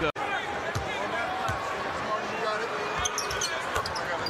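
A basketball bouncing on the hardwood court, a few separate thuds, over the general noise of an arena crowd. The sound drops out for a moment just after the start, at an edit cut.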